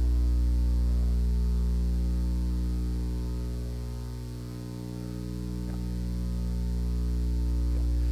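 Steady electrical mains hum, a low buzz with a stack of overtones. It fades down about halfway through and swells back up.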